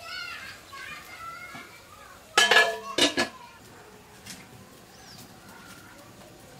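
Aluminium lid set onto an iron karahi: two loud metal clanks about half a second apart, each with a short ringing tone, a little before halfway through.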